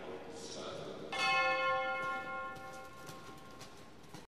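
A single bell stroke about a second in, ringing on and slowly dying away: the show-jumping judges' start bell, signalling the next rider.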